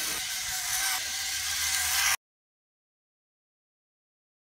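Steady rushing hiss of outdoor noise that cuts off suddenly about two seconds in, leaving silence.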